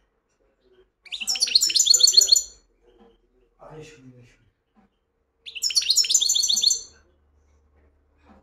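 European goldfinch singing: two loud phrases of rapid, twittering trills, each about a second and a half long, the first about a second in and the second a few seconds later.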